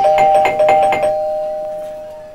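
Electronic doorbell chime set off by a push button: two steady tones sound together, the higher one stopping about a second in while the lower one fades out.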